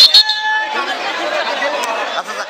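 Crowd chatter: a group of men talking over one another, with two sharp knocks right at the start.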